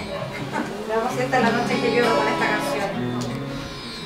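Acoustic guitar being plucked and strummed, low notes ringing on, as a song in D minor begins, with voices over it.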